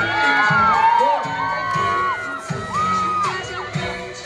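Live pop concert backing music with a steady beat, with audience members cheering and whooping over it.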